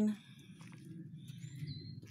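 Outdoor ambience: a steady low background rumble, with a single short, high bird chirp near the end.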